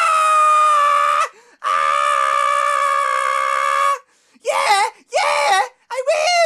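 A woman screaming in excitement at a marriage proposal: two long, high-pitched shrieks, then shorter wavering cries near the end.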